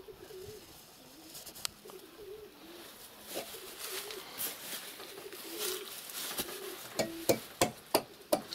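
Domestic pigeons cooing repeatedly, a low wavering call. Near the end, several sharp knocks.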